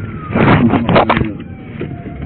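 A siren wailing faintly, its pitch sliding down and then up. In the first second a loud burst of rustling noise covers it.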